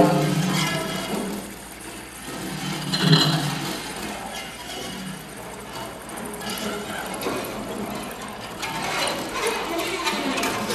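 Improvised experimental live music: low pitched tones swell at the start and again about three seconds in, over a scattered texture of clicks and rattles.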